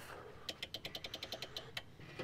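Rotary lift-axle control knob on a heavy truck being turned through its detents: a quick run of about a dozen small clicks. No air or valve sound follows, because the lift axle is not responding.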